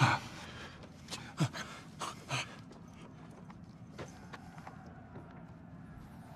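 A man's heavy breathing: a few short, sharp breaths in the first two and a half seconds, then only a faint steady room hum.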